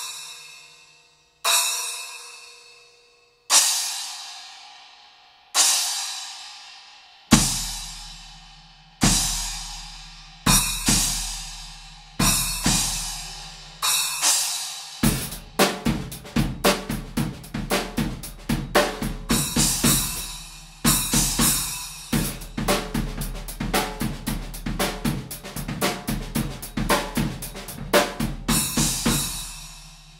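Splash cymbal struck on its own about every two seconds, each a quick splashy hit that is soon gone. From about seven seconds in, each splash hit is doubled by the bass drum. From about fifteen seconds the drum kit plays a busy groove of quick strokes with accented hits, stopping just before the end.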